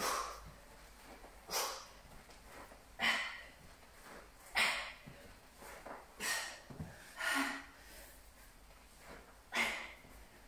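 A woman's sharp, forceful exhales, one with each rep of fast sit-ups, about seven in all, roughly one every second and a half: hard breathing from exertion.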